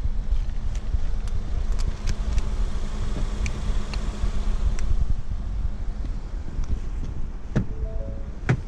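Wind buffeting the microphone of a handheld camera outdoors, a loud, uneven low rumble, with a few handling clicks and a louder click near the end.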